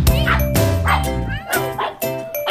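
Dog yipping: a few short, high yips that bend in pitch, over background music with a steady beat.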